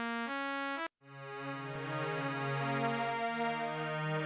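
Ensembletron software string-machine synth playing sustained chords on a plain, bright preset that cuts off suddenly just under a second in. After a brief gap, a lusher string-ensemble patch with its stereo ensemble switched on swells in slowly and plays a moving chord progression.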